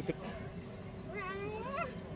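A child's voice making one drawn-out, rising whine-like call, faint, about a second in.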